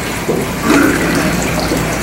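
Steady hiss of room noise picked up through the podium microphones.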